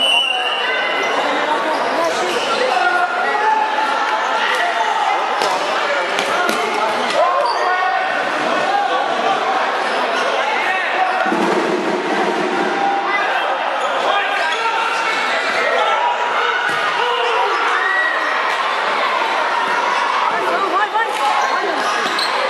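Futsal play on a hard indoor court: the ball thudding off feet and the floor now and then, over the steady chatter and shouts of a crowd of spectators and players, echoing in a large hall.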